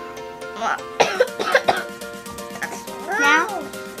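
A boy coughing, a short run of several coughs about a second in, irritated by ground pepper he has just shaken out.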